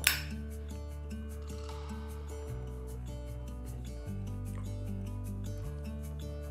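Background music with a steady beat, and at the very start one sharp metallic click: a flip-top lighter's lid snapping shut.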